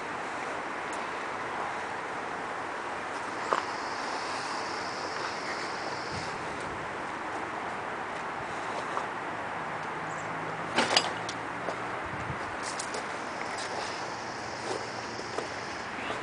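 Steady outdoor background noise with a few sharp clicks and knocks, the clearest about three and a half and eleven seconds in, and two faint high whines of about two seconds each.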